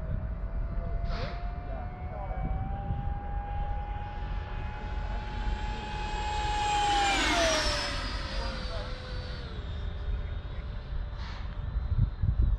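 Whine of a Freewing L-39 RC jet's electric ducted fan as it flies past: a steady whine climbs slowly in pitch, is loudest about seven seconds in, then drops in pitch as the jet passes and moves away. A low wind rumble on the microphone lies underneath.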